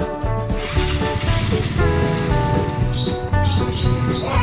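Background music with a steady, pulsing bass beat under held chords.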